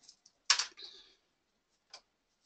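A few soft computer keyboard clicks, the loudest about half a second in, with fainter ticks before and near the end.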